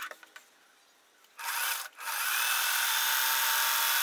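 Electric sewing machine running as it stitches two fabric strips together: a short burst about a second and a half in, a brief stop, then a longer steady run.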